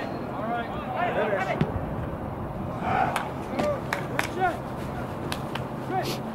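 Players' voices shouting and calling across a soccer field, with several short sharp knocks scattered among them.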